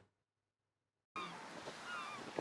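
Silence for about a second, then outdoor seaside ambience comes in: a few seagull calls over a steady background rush.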